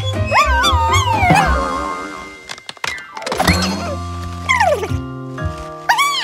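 Comic cartoon music with sound effects: wobbling, sliding tones early on, several falling glides, and a thunk near the end.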